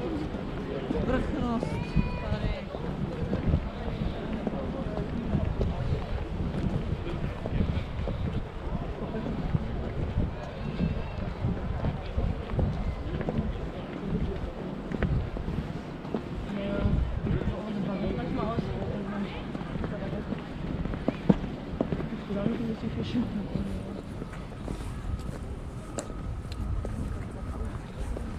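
Wind buffeting the microphone over the voices of passers-by talking, with a single sharp click about three quarters of the way through.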